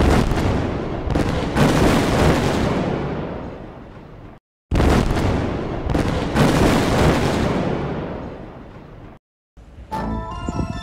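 Explosion sound effect played twice in a row. Each time it starts suddenly, with a few more cracks in the first second or so, then rumbles down over about four seconds. The second play starts about halfway through.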